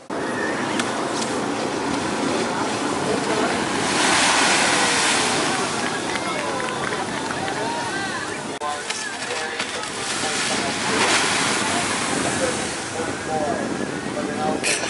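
Shore-break surf washing up a sandy beach, swelling louder as waves break about four seconds in and again near eleven seconds. Faint voices can be heard in the background.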